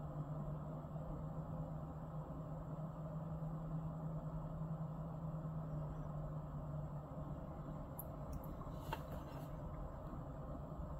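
Freight train of tank cars rolling past, with a steady low hum from the distant EMD SD60 diesel locomotives pulling under throttle to get the train underway. The hum eases a little about three-quarters through, and a few sharp clicks come near the end.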